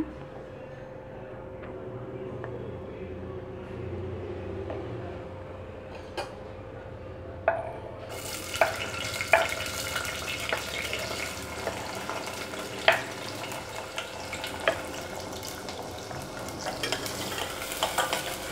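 Chopped shallots going into hot coconut oil in a steel pressure cooker: after a quiet stretch with a faint steady hum, a sizzle starts suddenly about eight seconds in and keeps on, with scattered clinks of a steel ladle against the pot as they are stirred.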